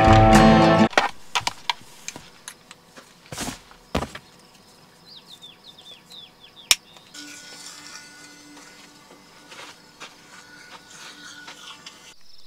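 Acoustic guitar music ends about a second in, giving way to quiet outdoor sound with a few handling clicks and a run of short chirps. From about seven seconds in, an electric toothbrush runs with a faint, steady hum.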